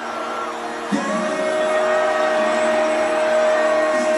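Live arena concert sound with no beat or bass: long held synthesizer tones, one high tone steady from about a second in, over a haze of crowd noise.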